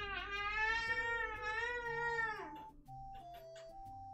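A baby's long, wavering high-pitched cry that lasts until about two and a half seconds in and then falls away. Soft background music plays throughout.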